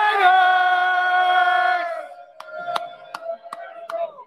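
Several voices hold one long drawn-out group yell, steady in pitch, that cuts off about two seconds in. A fainter held note then trails on while a run of sharp hits follows, about two or three a second.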